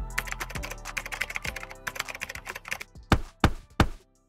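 End-card sound effect: a rapid run of clicks like typing over fading music, ending in three loud, sharp hits about a third of a second apart, then cut off.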